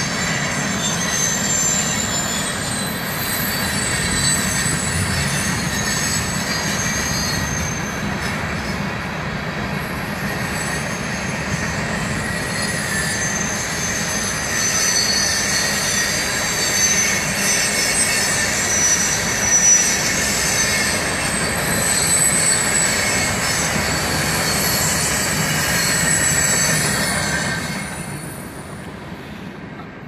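Train passing, a steady rolling rumble with high wheel squeal over it, fading away in the last couple of seconds.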